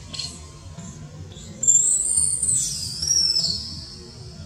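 Infant long-tailed macaque giving a loud, very high-pitched squealing cry that starts about one and a half seconds in, lasts about two seconds and drops in pitch near the end, over background music.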